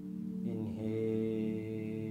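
Meditation background music: a steady low drone, joined about half a second in by a long held chanted tone.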